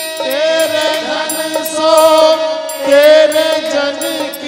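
A man singing a Hindi devotional bhajan in long, wavering held notes over instrumental accompaniment with a steady percussion beat.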